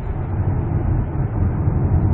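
Steady low rumble of road and engine noise inside the cabin of a Ford Explorer 2.3 gasoline turbo driving through a road tunnel.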